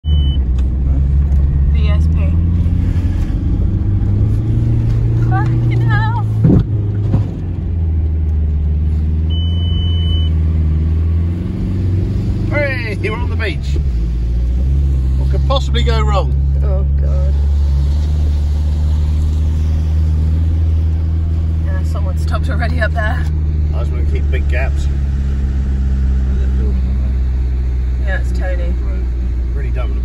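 Inside the cabin of a VW Passat driving on beach sand: steady engine and road drone whose pitch shifts, settling lower about fourteen seconds in, with a single thump about six seconds in.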